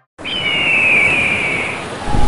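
A bird of prey's single long screech, falling slightly in pitch, over a steady wind-like rush.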